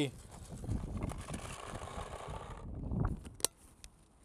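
Paintballs poured from a plastic pod into an open paintball loader, rattling steadily for about two and a half seconds, followed by a couple of sharp clicks.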